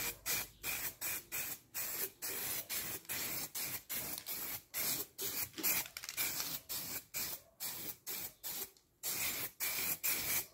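Aerosol spray paint can hissing in short repeated bursts, about three a second, as black paint goes onto a steel frame, with a brief pause near the end.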